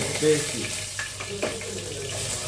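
Food sizzling as it fries in hot oil in a pot, with a few knocks of a wooden spatula stirring it about a second in.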